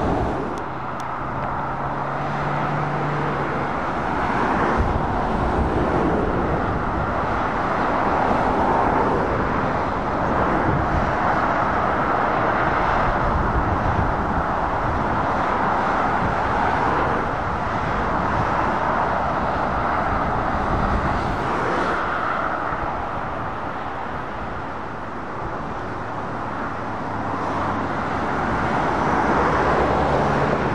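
Steady road traffic on a dual carriageway: lorries and cars passing below, the tyre and engine noise swelling and fading as each heavy truck goes by. A low diesel engine hum stands out briefly near the start and again near the end as trucks pass close.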